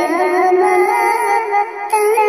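Pitch-shifted, cartoon-voiced female singing of a Bhojpuri Shiv charcha bhajan over musical accompaniment, with held, wavering notes and a brief break in the line near the end.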